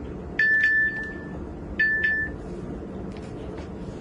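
A phone's electronic ring: two short chime tones at the same high pitch, about a second and a half apart, the first longer than the second.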